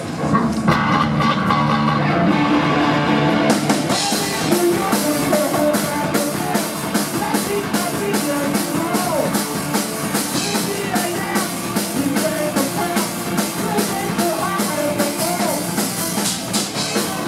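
Hard rock band playing live, with electric guitar, bass guitar and drum kit. The guitars open the song, and the full drum beat with cymbals comes in about three and a half seconds in and drives on steadily.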